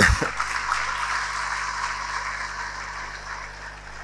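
Audience applauding and laughing after a joke, dying away over the last second or so.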